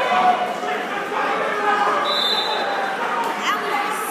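Indistinct chatter of many voices echoing in a gymnasium, with a brief high tone about two seconds in and a short rising squeak a little before the end.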